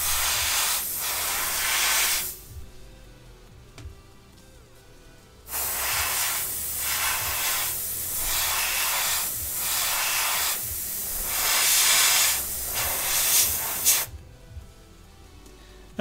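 Airbrush spraying water-based undercoat paint in two bursts of hiss: a short one of about two seconds, then after a pause of about three seconds a longer one of about eight seconds that swells and dips as the trigger is worked.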